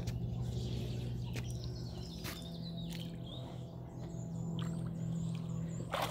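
Small splashes and drips of a dog wading in shallow lake water, over a steady low hum, with faint high chirps in the middle and later part.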